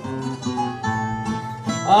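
Plucked acoustic guitar accompaniment playing a short instrumental interlude of single notes between the sung verses of an improvised Azorean song duel (cantoria ao desafio). A man's singing voice comes in right at the end.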